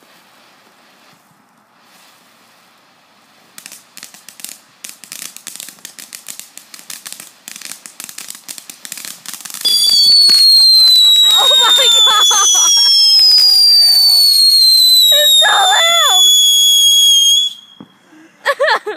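Consumer ground fireworks. Irregular sharp crackling starts a few seconds in. Just before the halfway point a loud, shrill whistle begins and slowly falls in pitch, a second, higher whistle joins it, and both cut off suddenly near the end.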